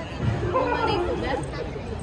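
Voices from an outdoor crowd: several audience members call out and chatter for about a second, over a steady low rumble of background noise.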